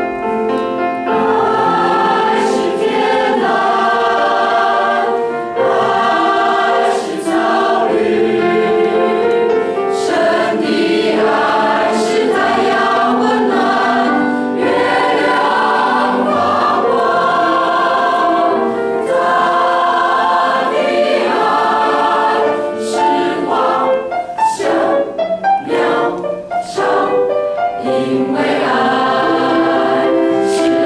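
Mixed choir of men's and women's voices singing a hymn.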